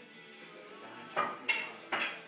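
Three sharp clinks in quick succession in the second half, over faint background music.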